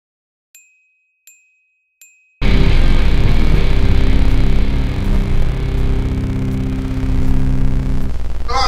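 Three short ringing clinks, evenly spaced about three-quarters of a second apart, then loud intro music with held low chords starts suddenly about two and a half seconds in.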